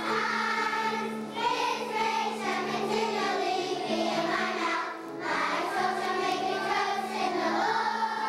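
A choir of kindergarten children singing together over sustained accompaniment notes, with a brief pause between phrases about five seconds in.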